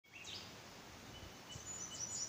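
Birds chirping faintly over a soft background hiss, with quick high notes that sweep in pitch near the start and again near the end.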